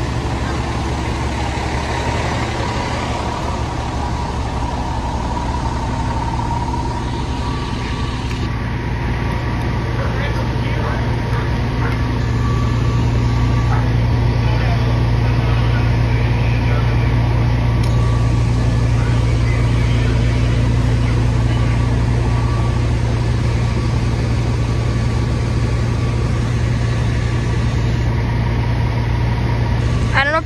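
Diesel engine of a parked fire truck running steadily, a continuous deep drone that gets somewhat louder about ten seconds in.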